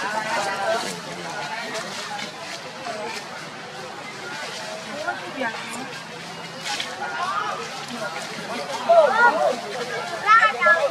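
Background chatter of people's voices with no clear words, and a few louder voice-like calls that bend up and down near the end.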